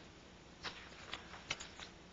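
Faint rustling of paper sheets being handled on a table, a few short touches over a second or so, the sharpest about a second and a half in.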